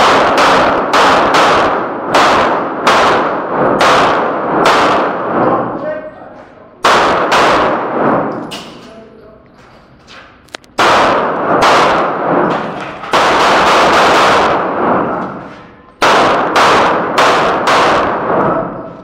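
Handgun fired in quick strings of shots, several a second, with gaps of one to two seconds between strings. Each shot rings on with heavy echo off the rock walls of an underground range.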